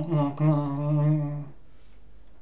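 A man's closed-mouth humming 'mmm' vocalisation, made while signing in sign language: a short hum, then a longer, slightly wavering one that stops about a second and a half in.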